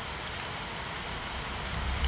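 Steady low background rumble and hiss, with no distinct event and only a faint tick near the end.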